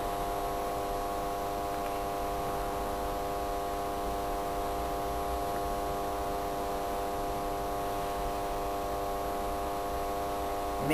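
Steady electrical mains hum with a buzzy stack of overtones, holding at an even pitch and level without change.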